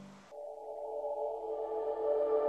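Background music: the last held notes of one piece die away, and about a third of a second in a soft ambient synthesizer pad of sustained tones comes in, slowly growing louder.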